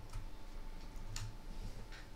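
A few soft clicks of computer keyboard keys being typed, the clearest about a second in, over a faint steady hum.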